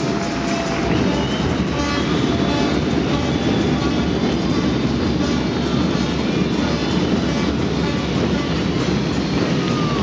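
A large crowd applauding steadily, the clapping echoing in a big indoor sports hall.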